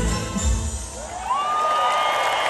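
The last notes of a live synth-pop song end, its bass cutting out before the middle, and a large concert crowd starts cheering, with one long rising whistle held over the cheers.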